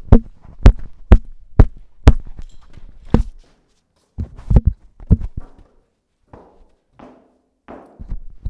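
A series of loud, sharp thumps and knocks from a person moving about with a handheld microphone in hand: about six, roughly half a second apart, then a short pause and a few more, trailing off into faint rustling near the end.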